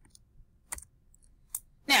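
Two short mouse clicks about a second apart, advancing the presentation to the next slide; speech begins near the end.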